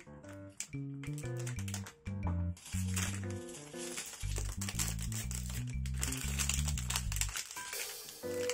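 Background music, with a plastic ice-cream bar wrapper crinkling as it is peeled open, densest from about three seconds in until near the end.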